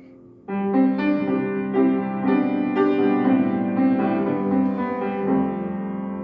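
Grand piano played solo, without voice. A soft fading chord gives way about half a second in to a louder run of chords and melody notes.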